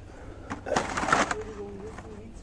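Plastic blister-carded toy cars rustling and scraping against each other as one card is pulled from a bin. A crackly burst about half a second in lasts close to a second.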